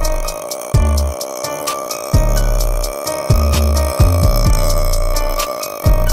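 Hip hop instrumental beat with no vocals. Deep 808 bass notes, each opening with a quick drop in pitch, land every second or so over rapid hi-hats and a sustained synth tone.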